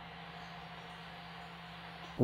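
Faint steady hiss with a low, even hum: the room tone and electrical noise of a recording, with no distinct events.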